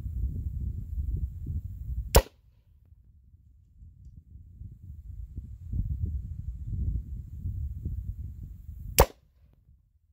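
Two sharp airgun shots about seven seconds apart, as pellets are fired into a bare block of ballistic gelatin. A low rumble runs between the shots and drops away just after each one.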